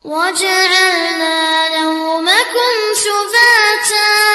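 A child's voice reciting the Quran in melodic tajweed style: one long unaccompanied phrase of held notes with ornamented turns, rising to a higher note past the midpoint.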